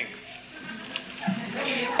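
Quiet voice sounds without clear words, in a pause between spoken lines.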